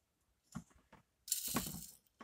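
Faint handling noises: a single light tick, then a brief rustling scrape near the end, as small toy objects are picked up and moved.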